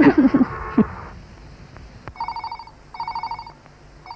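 A telephone ringing twice, each ring a trilling tone about half a second long, the two close together.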